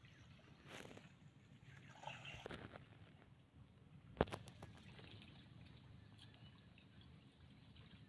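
Near silence: faint steady outdoor background noise, with one sharp click about four seconds in.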